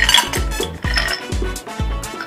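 Ice cubes poured into a glass, clinking and clattering mostly in the first half second, over background music with a steady beat.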